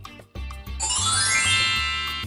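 Magic sparkle sound effect: a shimmering cascade of bell-like chimes rising in pitch, starting about a second in, over background music with a steady bass beat.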